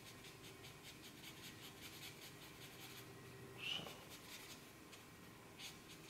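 Black marker drawing on paper: a faint, quick scratching of short strokes as the wing is shaded, with a louder stroke a little past halfway and another near the end.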